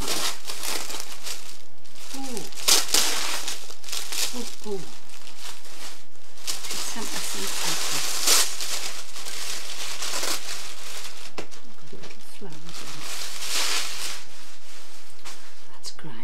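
Tissue-paper wrapping crinkling and rustling in repeated bursts as a parcel is pulled open by hand.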